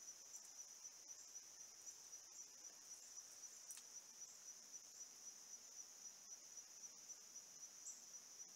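Faint, steady high-pitched chorus of insects such as crickets, pulsing about three times a second.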